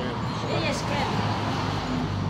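Short snatches of a person's voice over a steady low background rumble.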